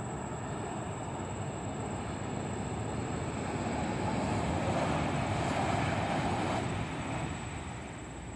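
Jakarta–Bandung high-speed train passing below at speed: a steady rushing noise that swells to its loudest a little past halfway, then fades away over the last second or two.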